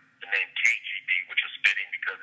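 A man's voice speaking over a telephone line, thin and narrow in tone, with a faint steady hum underneath.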